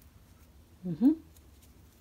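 A woman's single short vocal sound, a brief rising syllable about a second in, over quiet room tone with a few faint soft clicks.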